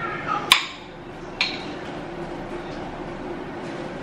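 Two sharp clicks from a small seasoning jar being opened by hand, about a second apart, the first louder with a brief ring. A steady low hum runs underneath.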